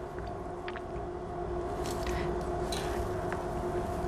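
Soft, scattered rustling of a synthetic lace front wig being handled and freed from its packaging, over a steady background hum that holds one pitch.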